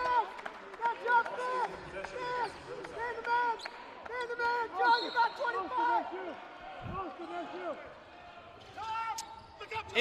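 Basketball sneakers squeaking on a hardwood court: many short, arching squeaks in quick succession. A few dull ball bounces are mixed in.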